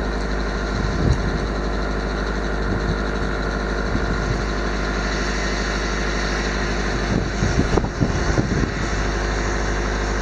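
A vehicle engine idling steadily close by, with a few low thumps between about seven and nine seconds in.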